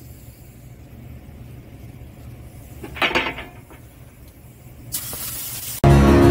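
Air-fed gravity-cup paint spray gun hissing as it sprays a coat of gray paint, starting about five seconds in; music cuts in just before the end.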